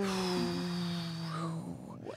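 A person's voice holding one long, drawn-out thinking sound at a slowly sinking pitch, fading out near the end.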